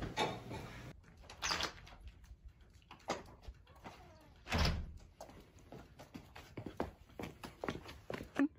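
A front door being handled, then shutting with a heavy thud about halfway through, followed by a run of short, quick footsteps.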